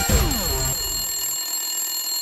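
Short TV show bumper jingle: music with an alarm-clock bell ringing. A few quick falling tones come in the first second, then a steady ring.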